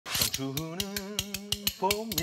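Metal tongs clacked together rapidly in a rhythm, about seven sharp clicks a second, over a held sung note.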